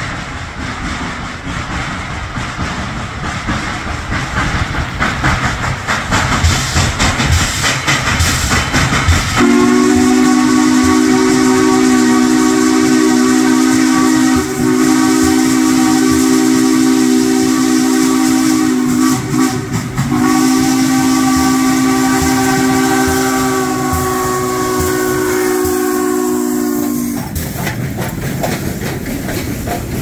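Steam locomotive 1309, a C&O 2-6-6-2 Mallet, working hard up a grade with loud chuffing exhaust and hissing steam. About ten seconds in it sounds its chime whistle in two long blasts, the first about ten seconds long and the second about seven, broken by a short gap. The train then rolls on with clickety-clack from the wheels.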